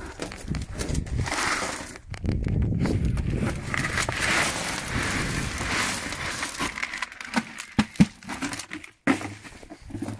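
Washed sapphire gravel poured out of a plastic bucket onto a flat sorting table: a steady pour of small stones for about seven seconds, then a few separate clicks of stones landing.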